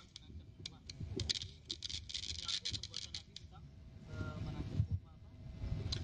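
Rustling and handling noise close to the microphone: quick runs of short, crisp scratchy strokes in the first half, with faint voices in the background.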